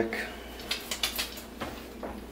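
Faint room tone with a few light clicks and knocks, like small objects being handled.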